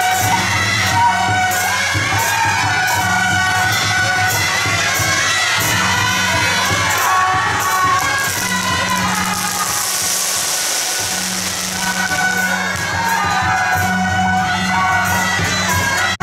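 A street marching band of clarinets, trumpets and cymbals playing a melody over a steady beat. A rushing, hissy noise swells for a couple of seconds in the middle.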